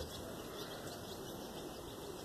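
Quiet outdoor garden ambience: a low, steady hiss with a few faint, short high chirps scattered through it.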